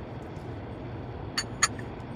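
Two light clinks of a porcelain teacup being set onto its saucer, about a second and a half in, over a steady low hum inside a car.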